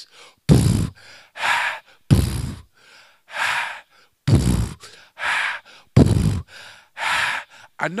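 A man beatboxing into a handheld microphone: a slow repeating beat of deep kick-drum sounds alternating with breathy, hissing snare sounds, about one every second.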